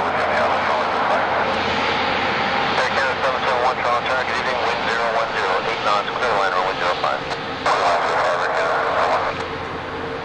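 Rolls-Royce Trent XWB engines of a British Airways Airbus A350-1000 running as the airliner rolls onto the runway, a steady hum with a held tone, under a voice that stops near the end.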